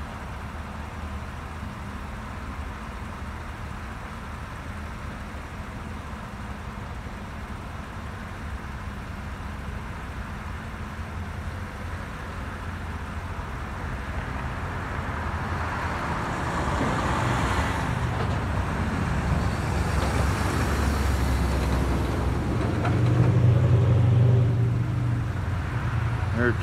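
Road traffic going by, with a vehicle passing close that builds up over the second half and is loudest, with a low rumble, a couple of seconds before the end.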